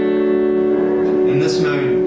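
Electric guitar chord ringing through a tape-echo-style delay pedal (1776 Effects Multiplex, PT2399-based) into a Tone King Imperial tube amp, held steady; about a second and a half in, shifting, bending tones join the sustained chord.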